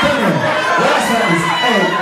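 A packed crowd cheering and shouting, many voices overlapping at once, loud and unbroken.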